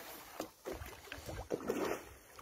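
Faint, irregular splashes and sloshing of water beside a wooden canoe, from a tambaqui hooked on a pole-and-line being played near the boat.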